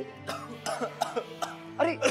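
Background music with several short voiced coughs or throat-clearings from a person in the first half, followed by a spoken exclamation.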